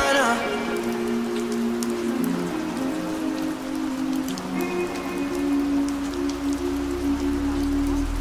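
Steady rain sound under a beatless stretch of music: a few long, sustained synth chords with no drums or vocals. A low bass swells in near the end.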